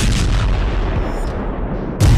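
A sudden loud boom with a heavy low rumble, its sharp top fading over about a second; a second boom hits right at the end.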